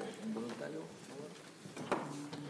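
Quiet, low murmured speech, with one sharp knock near the end.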